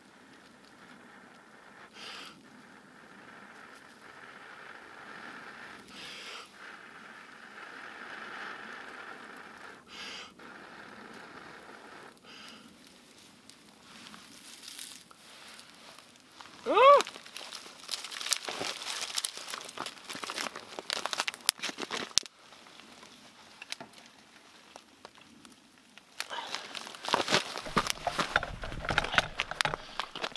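Long, steady breaths blown into a smouldering tinder bundle to coax a char-cloth ember into flame, swelling and fading with each breath. Once it flares about seventeen seconds in, the dry tinder crackles and crinkles as the burning bundle is handled and set into the fire lay.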